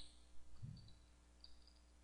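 A few faint clicks and taps from a computer keyboard as a search word is typed, in near silence.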